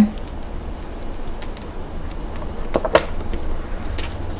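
Small objects handled close to the microphone: scattered light clicks and a jingle, with a short louder knock about three seconds in, over a steady low hum.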